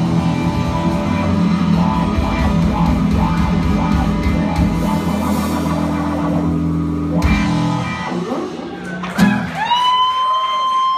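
Live rock band with guitars playing the closing bars of a song, ending on a final hit about seven seconds in that rings out and fades. Near the end a high, steady tone sets in, gliding up first and then holding.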